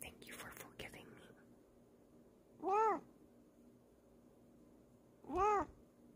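Bengal cat meowing twice, two short meows that rise and fall in pitch, about two and a half seconds apart. Faint rustling in the first second.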